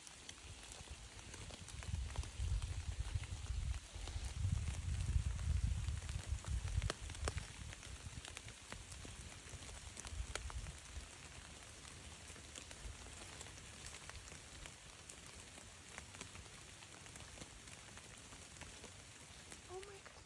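Light rain pattering on forest leaves: a steady crackling hiss dotted with single drop ticks. A low rumble runs under it for the first half.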